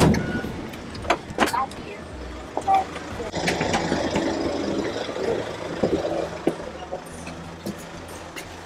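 People getting out of a car: a few knocks like a car door within the first two seconds, then footsteps over a steady low hum of street and traffic noise.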